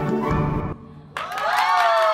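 Music with a steady pitched backing cuts off about three-quarters of a second in. After a short hush, loud whooping and cheering voices break out with clapping as the dance number ends.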